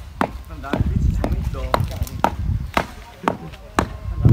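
Wooden rammers pounding plain soil into the formwork of a rammed-earth wall, a steady series of dull thuds about two a second.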